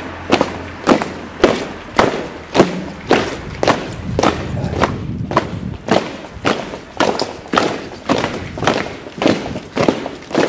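A column of uniformed guards marching in step, their boots striking stone paving together in a steady beat of about two steps a second.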